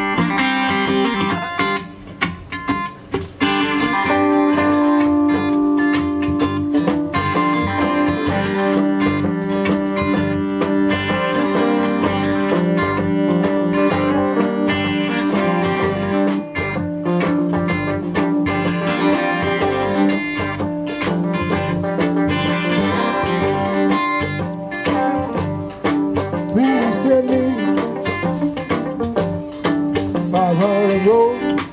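Live blues band playing an instrumental intro: electric guitar and banjo over sustained notes, with a fiddle bowing. The band drops out briefly about two seconds in, then plays on steadily.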